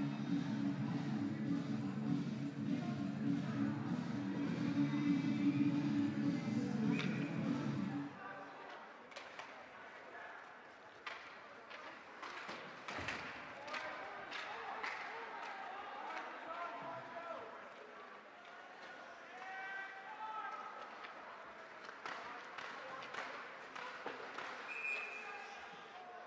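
Music over an ice rink's PA, cutting off abruptly about eight seconds in. Then ice hockey play: sharp clacks of sticks and puck, and thuds off the boards, over the voices of players and spectators in the rink.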